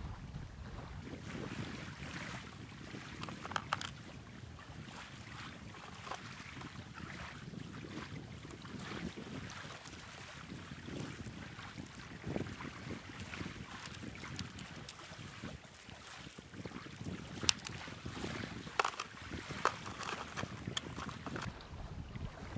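Wind buffeting the microphone, with scattered clinks and clatter of metal cage feeder baskets being taken out of a plastic tub and set down on the ground. The clicks come more often in the last few seconds.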